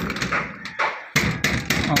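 Rolled paper banknotes rustling and fingers tapping against a hollow metal door-handle tube as the bills are worked out of its end: a string of irregular taps and crinkles, with a brief lull in the middle.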